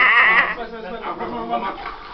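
Young men laughing: a loud, high, wavering laugh in the first half second, then quieter laughter.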